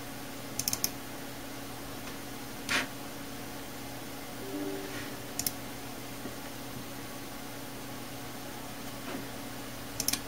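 Computer mouse clicks: a quick cluster of clicks near the start and a single click about five and a half seconds in, over a steady low hum. A short, louder knock comes about three seconds in.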